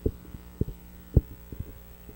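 Steady low electrical hum on the microphone line, with a few soft low thumps, the loudest about a second in.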